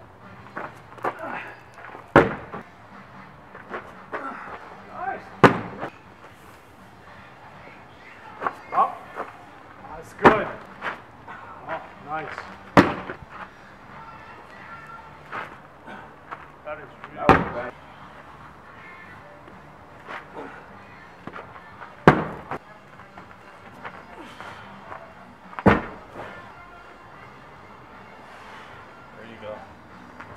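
A series of sharp single impacts a few seconds apart, about seven in all, as a weighted throwing bag is tossed up over a high bar and comes down on gravel.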